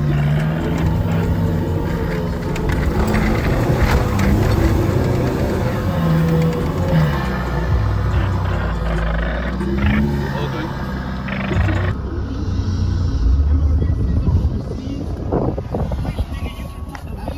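Four-wheel drive's engine running as it drives along a sand track, heard from inside the cab, mixed with people's voices and music.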